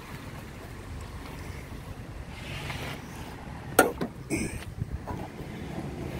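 Car hood being opened: a sharp click from the hood latch a little under four seconds in, then a short clatter and a smaller knock as the hood is lifted and propped, over a steady rush of wind on the microphone.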